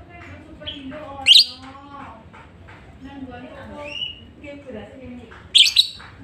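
Lovebird, a Fischer's lovebird by its orange face and red bill, giving two loud shrill shrieks, one about a second in and one near the end, with a shorter squeaky call between them.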